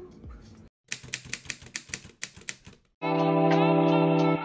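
A quick, even run of sharp clicks, about six a second for two seconds, like typewriter keys. About three seconds in, sustained organ-like music chords begin.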